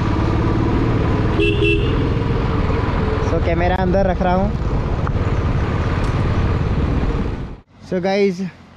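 Steady motorcycle engine and road rumble while riding. A short horn toot comes about a second and a half in, and a voice calls out briefly around the middle. The sound drops away just before the end.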